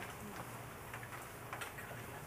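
Quiet room tone with a steady low hum and a few faint ticks.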